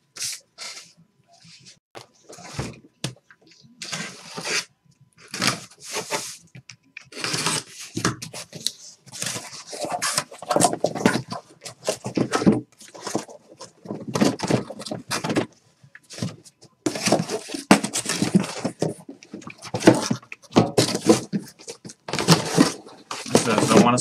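Cardboard shipping case being cut open with a blade and its flaps pulled back: irregular scratchy bursts of cutting, rustling and scraping cardboard, with the boxes inside sliding out near the end.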